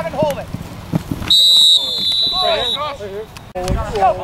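A referee's whistle gives one long, steady, high blast of about a second and a half, blowing the play dead; it is loudest in its first half second. Indistinct shouting voices are heard around it.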